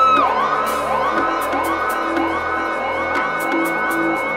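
Experimental electronic music: a high vocal glide, rising then falling, is echoed by a delay so that it repeats about twice a second in overlapping arches. Underneath are steady held tones and a low drone.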